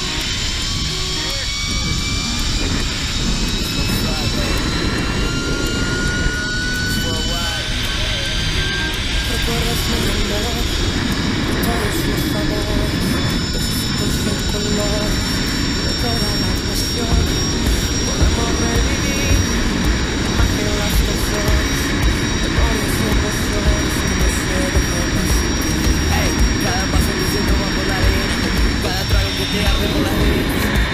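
Zipline trolley's pulleys running along the steel cable, a whine that climbs slowly in pitch over the first ten seconds or so as the rider gathers speed, then holds a steady high pitch. Heavy wind rushes over the helmet-camera microphone throughout.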